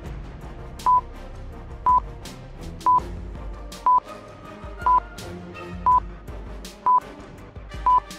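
Electronic countdown-timer beep sounding once a second, a short single high beep each time, eight in all, over background music.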